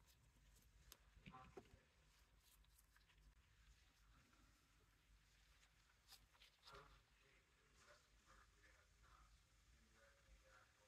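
Near silence: room tone with a few faint, short clicks and taps from small handling of the clear jelly stamper, stamping plate and nail-art brush.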